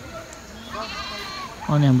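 A single faint, quavering goat bleat, lasting under a second, starting about half a second in.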